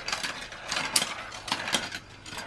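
Marbles rolling through a GraviTrax plastic marble run, along its metal rails and curved track pieces: a continuous rattle of small clicks, with a sharper click about a second in.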